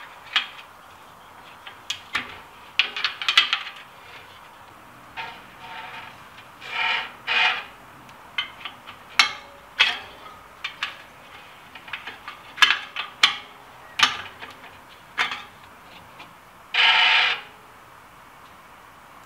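Bicycle wheel being trued in a truing stand: scattered sharp metallic clicks from handling the wheel and spoke wrench, with a few short scraping rubs as the spun wheel brushes the stand's gauge, the longest near the end.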